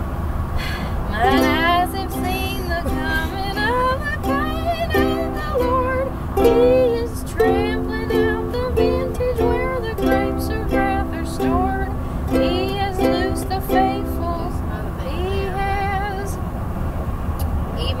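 Ukulele strummed through a chord progression, with a voice singing along in gliding pitches, over the steady low road rumble of a moving car's cabin.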